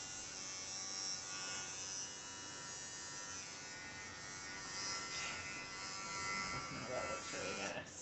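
Electric dog grooming clippers running with a steady buzz while trimming the hair at the corner of a dog's eye. The motor cuts off just before the end.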